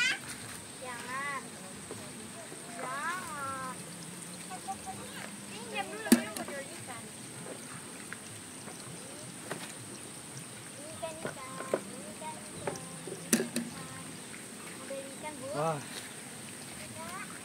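Hand pruning shears snipping tomato truss stems: a few sharp clicks, the loudest about six seconds in and another near the end. Under them runs a faint trickle of water from the hydroponic PVC pipes.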